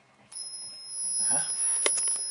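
A home-built high-voltage pulse circuit with an ignition coil, driving an energy-saving lamp tube, starts up with a high-pitched whine of two steady tones that comes on about a third of a second in as it is switched on. A short click sounds near the end.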